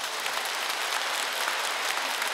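A large audience applauding, many hands clapping together in a steady, even patter.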